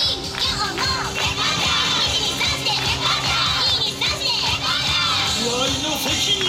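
Many voices of a dance team shouting calls together, overlapping, over dance music.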